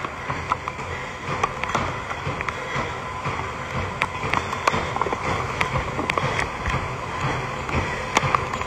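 Microphone handling noise: scattered irregular clicks and rustling over a steady hiss, as the phone or its earphone mic shifts and rubs while held.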